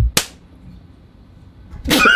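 A single sharp, slap-like crack about a quarter second in, as one cat swats another, just after a soft thump. Laughter breaks out near the end.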